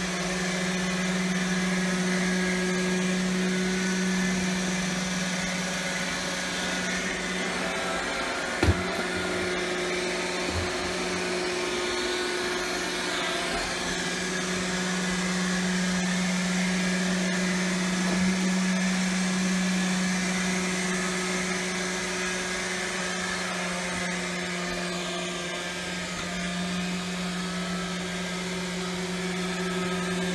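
bObsweep PetHair Plus robot vacuum running as it moves across a hardwood floor: a steady motor hum with a hiss of suction and brushes. One sharp knock about nine seconds in, and a fainter one shortly after.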